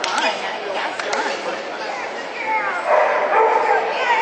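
A dog barking, loudest in the last second or so, over a background of people talking.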